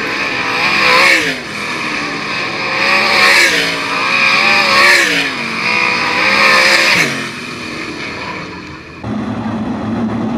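410 sprint cars' V8 engines passing the flag stand at speed one after another as they take the checkered flag, each car's engine note swelling and gliding down in pitch as it goes by, several times in the first seven seconds. About nine seconds in the sound switches to a steady low drone of sprint cars rolling slowly in a pack.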